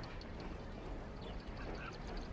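Quiet outdoor background ambience, a low steady noise bed with a few faint, short animal calls.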